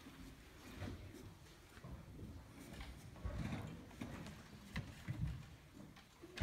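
Faint footsteps and shuffling with scattered light knocks and low thumps, the sounds of people moving about and getting into place before a piano duet.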